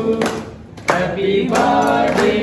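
A group of people singing a birthday song together, with hand clapping. The singing drops away briefly about half a second in and starts again just before the one-second mark.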